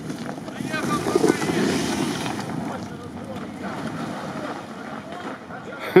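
Jeep Wrangler engine revving hard as it struggles for grip on an icy, snowy slope and fails to make the climb, with wind buffeting the microphone. Loudest in the first couple of seconds, then easing off.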